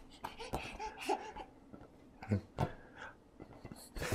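A toddler babbling in short, quiet bursts, with a few brief soft knocks in between.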